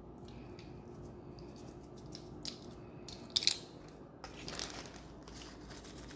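Faint handling noises: a few brief rustles and clicks of a zip-top plastic bag being opened and handled, over a low steady hum.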